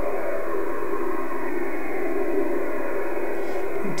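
Steady static hiss from an HF shortwave receiver's audio output, cut off above a couple of kilohertz by the receiver's narrow voice filter, with no clear signal in it.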